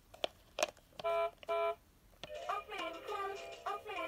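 Fisher-Price Little People toy car's electronic sound unit: a couple of light plastic clicks, then two short steady electronic beeps, then a tinny synthesized children's song starts up about two seconds in.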